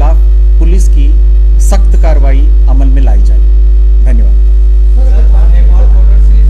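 Loud, steady electrical mains hum at about 50 Hz with a row of overtones, picked up in the press-conference microphone recording and drowning out everything else.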